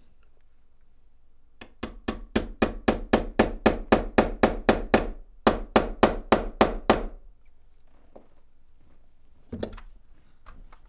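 Hammer tapping a steel pin punch about four times a second, drifting a replacement front sight sideways into the dovetail on a rifle barrel, metal on metal. The tapping stops briefly about halfway, then carries on, and a single knock comes near the end.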